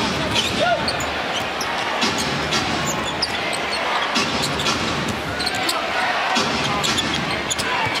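A basketball being dribbled on a hardwood arena court, with repeated sharp bounces over the steady murmur of the arena crowd.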